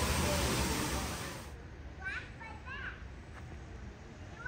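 A steady rushing hiss that cuts off abruptly about one and a half seconds in. After that come short, high voices of children in the background.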